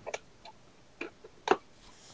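A few sharp plastic clicks from a small transforming toy being handled and its parts snapped into place, the loudest about a second and a half in.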